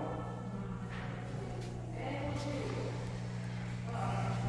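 A steady low hum, with faint voices murmuring in the background about halfway through.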